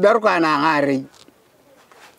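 Speech only: a man's voice saying one short phrase in a non-English language, lasting about a second, then a pause.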